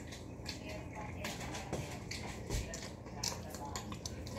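Spoon and fork clicking and scraping against a plate as pasta is scooped up, a string of short, sharp clicks, with faint voices in the background.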